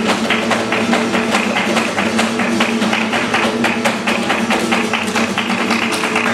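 Live flamenco soleá: two acoustic flamenco guitars playing, with rapid, steady hand-clapping (palmas) from two palmeros.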